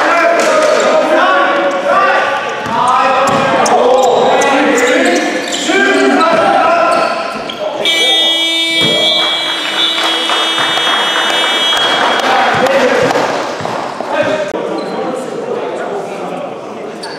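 Basketball game in a large hall: voices calling and the ball bouncing on the floor, then about eight seconds in the game-clock buzzer sounds a steady tone for about four seconds, marking a stop in play.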